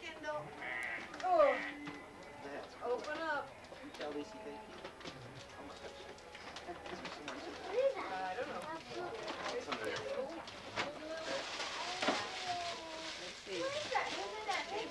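Overlapping voices of adults and young children in a room, with rustling and tearing of gift-wrapping paper; a louder stretch of paper rustling and tearing comes near the end.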